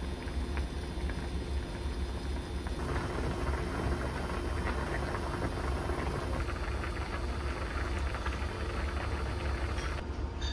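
Broth boiling hard in an aluminium hot pot: steady bubbling and simmering over a low hum, the bubbling growing busier about three seconds in.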